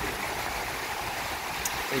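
Small waves breaking and washing through shallow water at the shoreline: a steady rush of surf.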